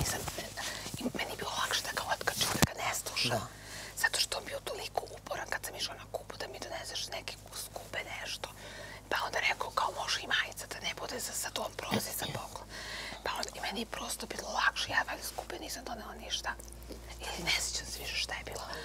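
Whispered conversation between two women, low voices going on throughout.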